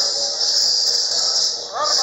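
A steady high-pitched hiss, with a short burst of voice near the end.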